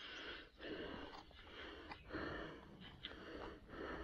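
A man breathing hard through the mouth, short panting breaths in a steady run of about seven in four seconds, with a couple of faint clicks from cleaning a mushroom with a knife.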